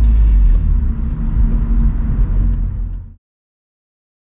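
BMW Z4 E85 roadster driving with the roof down: engine and road noise heard from the open cabin as a steady low rumble. It cuts off abruptly about three seconds in.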